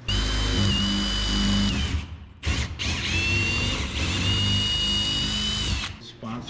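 Cordless drill drilling through a plastic sheet into the rubber bead of a tractor tire, a steady high whine in two long runs with a short stop about two seconds in.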